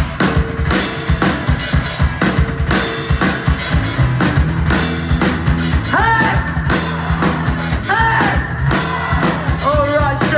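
Live rock band playing: a drum kit with bass drum and snare driving a steady beat under electric guitar and bass, and a voice coming in about six seconds in.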